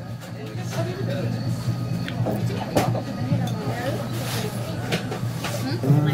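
Restaurant background: music playing under the indistinct voices of other diners, with a steady low hum and a few sharp clicks.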